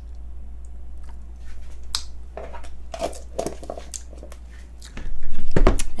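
Chopsticks scooping sticky salted octopus (nakji-jeot) from a glass jar, with small clicks and soft wet squishing sounds. Near the end there is a loud low thump.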